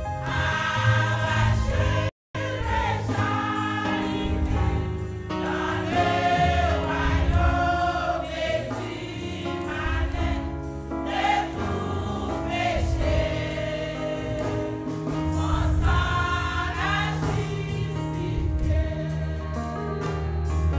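Women's church choir singing a gospel hymn in parts. The sound cuts out completely for a split second about two seconds in.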